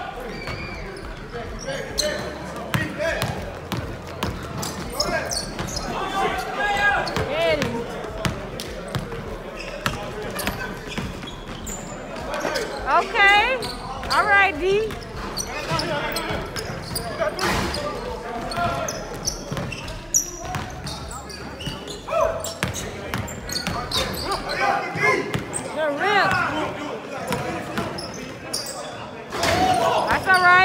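A basketball bouncing on a hardwood gym court, with sneakers squeaking and players' distant shouts, echoing in a large hall.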